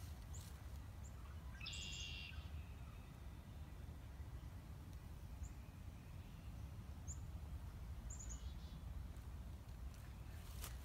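Faint wild bird calls in a marsh: scattered short, high chirps and one longer buzzy call about two seconds in, over a low, steady background rumble.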